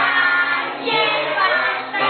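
A group of children singing a Christmas carol together, with held notes that move from pitch to pitch.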